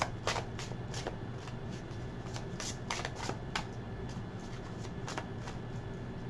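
An animal spirit oracle card deck shuffled by hand: irregular quick flicks and slaps of card against card, in short runs.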